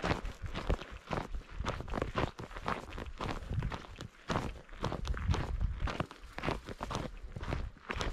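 Footsteps of a hiker walking on a dry dirt and gravel trail, about two steps a second, over a low rumble.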